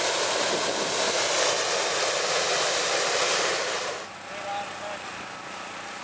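Hot-air balloon's propane burner firing in one long blast to heat the envelope as the balloon is stood up: a steady hiss that cuts off about four seconds in.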